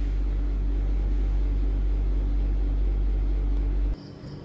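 A steady low hum that cuts off abruptly just before the end.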